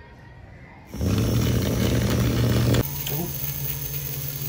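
Small DC toy motor with a plastic propeller fan switching on about a second in and running with a steady buzzing whir. Near the three-second mark it gets quieter and its pitch rises slightly, then it runs on steadily.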